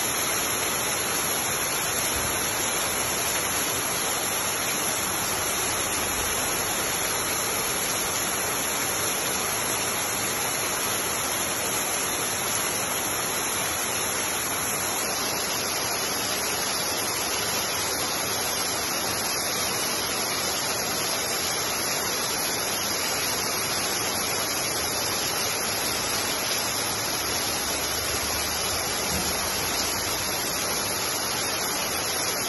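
Heavy rain falling, a steady, even hiss that holds at the same level throughout.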